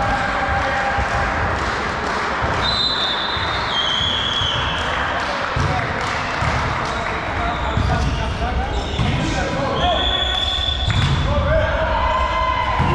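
Echoing sports-hall din of players' voices, with a volleyball bouncing on the wooden floor in several low thumps. Two high squeals of about a second each, one near the start and one near the end.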